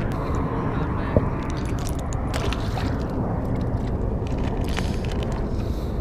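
Steady low rumble of wind on the camera microphone, with one sharp click about a second in and a few faint ticks from handling.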